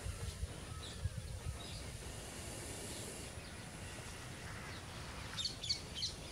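Quiet outdoor ambience: a steady low rumble with faint bird chirps, a few quick ones near the end.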